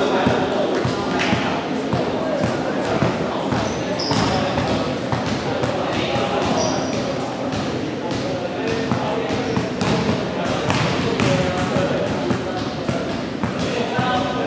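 Basketball bouncing on a hardwood gym floor amid the chatter of players' voices in a large hall. There are two brief high squeaks, about four and six and a half seconds in.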